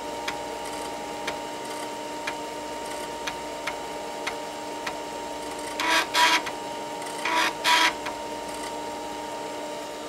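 A 5.25-inch floppy drive running and reading: a steady hum with light ticks every second or so, and two short buzzing bursts of head-stepping, each in two parts, about six and seven and a half seconds in. The drive is in working order.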